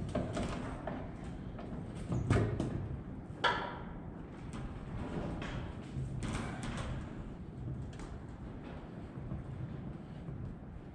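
Hand-work on a planter seed meter's fasteners: scattered clicks and knocks of metal parts and tools being handled, with a sharp ringing clink about three and a half seconds in.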